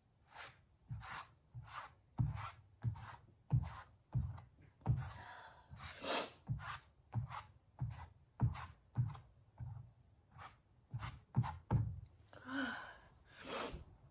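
A hand smearing thick paint across a stretched canvas in quick strokes, about two a second, each a short swish with a dull thud from the canvas. Near the end there is one longer breathy sound.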